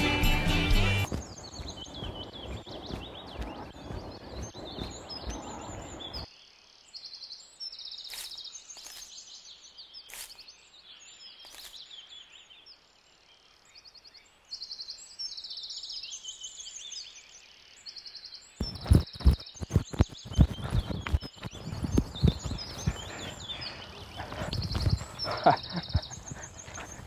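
Music ends about a second in, leaving outdoor ambience with birds chirping in short repeated bursts. In the last third comes a run of sharp knocks and clatter like footsteps or hooves.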